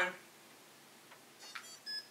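Smove Mobile smartphone gimbal beeping as it is switched on: a faint click about a second in, then short high electronic tones, ending in a clear steady beep near the end.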